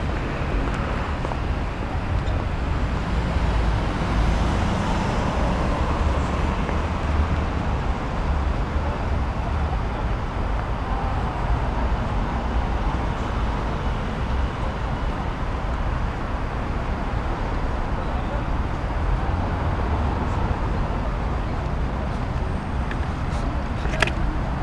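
Steady low rumble of city road traffic, with faint indistinct voices in the background.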